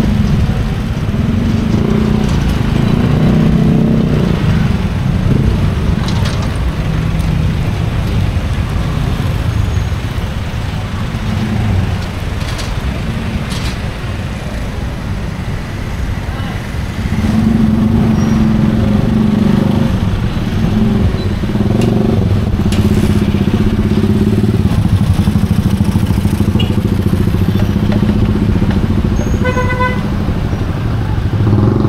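Street traffic of motorcycles and motorcycle tricycles, their small engines running and passing close by in a steady drone that swells in the second half. A short horn toot comes near the end, over a background of voices.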